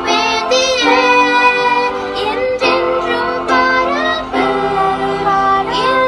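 Young female voices singing a Tamil Christian worship song with vibrato, accompanied by sustained chords on an electronic keyboard.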